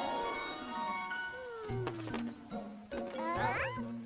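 Cartoon soundtrack: a twinkling music cue with falling glides over the scene change, then soft sustained background music. Near the end come short squeaky calls from cartoon creatures, each rising and falling in pitch.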